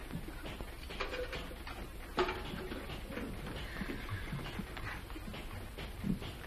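Low hiss and hum of an old optical film soundtrack, with a single knock about two seconds in.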